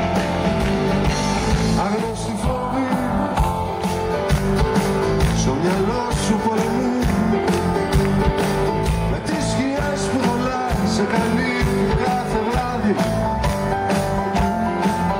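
A live rock band playing a song: a strummed acoustic guitar, an electric guitar and a drum kit keeping a steady beat.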